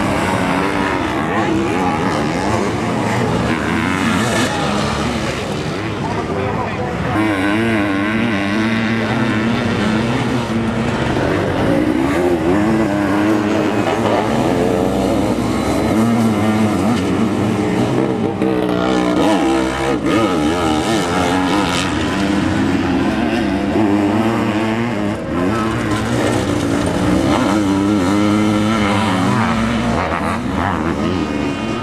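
Sidecarcross racing outfits' engines revving hard, their pitch rising and falling again and again as they power through the corners, with several machines overlapping.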